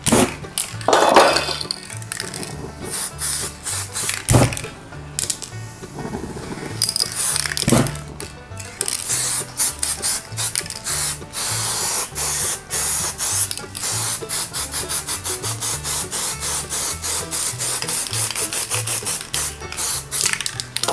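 Aerosol spray-paint cans hissing in short, repeated bursts, quickening to about three a second in the second half, over background music.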